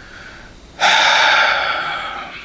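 A man's long breathy sigh, breathed out through the mouth without voice. It starts suddenly about a second in and fades away.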